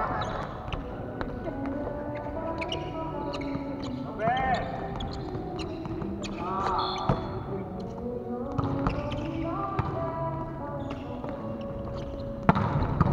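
Volleyball rally in a large gym: repeated sharp slaps and knocks of the ball being hit and dropping on the wooden floor, with players' voices calling, all echoing in the hall.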